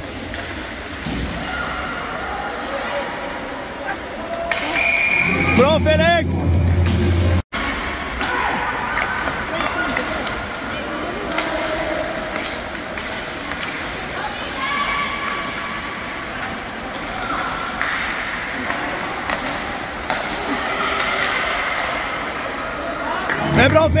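Echoing ice-rink ambience during a youth hockey game: scattered voices and shouts from players and spectators, with music playing in the hall. Two short gusts of low rumble, about five seconds in and near the end, with a rising, wavering call over the first.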